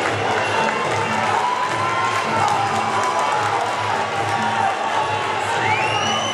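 Spectator crowd noise in a sports hall with cheering, over loud music with a steady low beat. Near the end, a rising high-pitched call stands out above the crowd.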